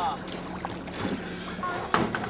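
A boat's motor idling with a steady low hum, with faint voices in the background and a sharp click near the end.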